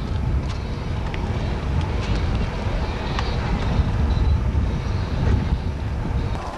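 Small motorboat under way: a steady low rumble of the motor and wind on the microphone, with a few faint knocks.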